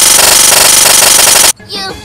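An ear-splitting, distorted edit effect: a short sound clip looped into a rapid, even rattle that cuts off suddenly near the end. A shouted 'You' follows.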